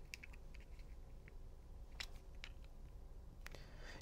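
Faint, scattered light clicks of a small plastic door/window contact sensor being handled, over a low steady room hum.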